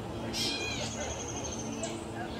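Birds calling: a short mewing call about half a second in, then a thin, steady high whistle lasting about a second, with a brief high chirp near the end.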